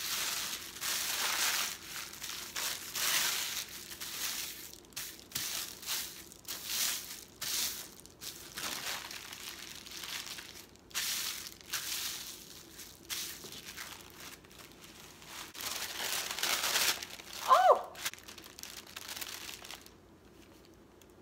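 Sheet of used tissue paper crinkling and rustling as it is smoothed flat and folded by hand on a countertop, in repeated irregular rustles. Near the end there is a short squeaky glide.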